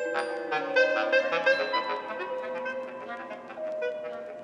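Atonal electronic music from an algorithmic SuperCollider composition: a cluster of sustained reedy, wind-like synthesized tones entering one after another with sharp attacks, several held at once, thinning out and getting quieter toward the end.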